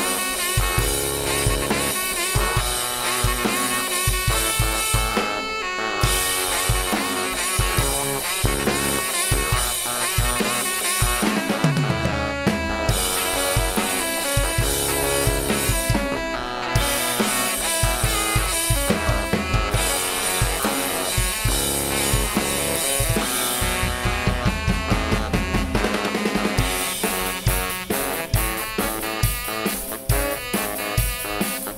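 A live band playing a song: a full drum-kit beat with bass drum and snare under dense pitched instruments, with a few brief breaks in the drumming.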